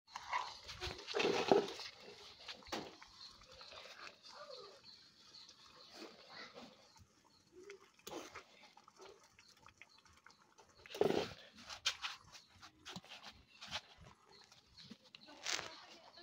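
A domestic animal, most likely a dog, calling three times: about a second in, around eleven seconds in and near the end, over a quiet background.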